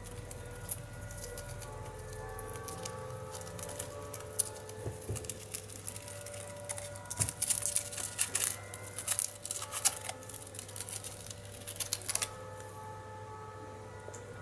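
Soft background music with small scratching and clicking from a hamster nosing and climbing at a woven grass ball toy, busiest in the middle.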